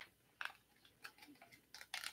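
A few faint, light clicks of a small plastic tippet spool being handled and worked open in the fingers, against near silence.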